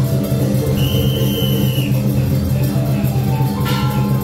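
Loud music with drums accompanying a dragon dance. A high steady tone is held for about a second near the start, and a short sharp burst comes near the end.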